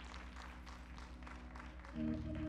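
Scattered hand clapping from a church congregation, faint, over a low held chord from a keyboard or organ.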